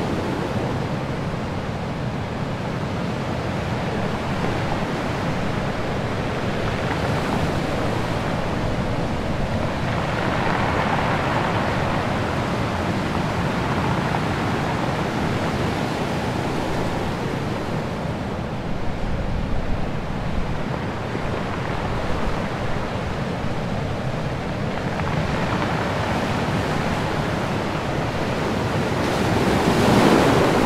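Rough, stormy sea: a steady rush of waves breaking and churning with wind, swelling louder about a third of the way in and again near the end.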